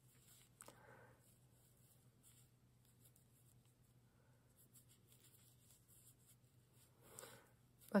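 Faint rustling and rubbing of knitted yarn fabric being handled as a sleeve is hand-sewn into a sweater, over a low steady hum.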